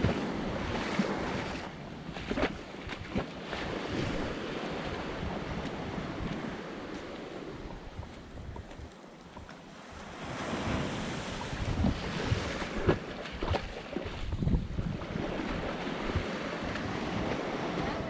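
Small waves breaking and washing up the sand at the shoreline, with wind gusting on the microphone. The surf eases off for a few seconds in the middle, then picks up again.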